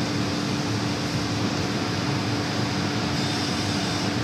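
7 HP commercial cold-room condensing unit running on R22 while refrigerant is being charged: the compressor gives a steady hum over the even noise of the condenser fan.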